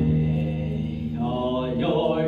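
Male voice singing a long held low note over an instrumental accompaniment, the pitch sliding upward in the second half.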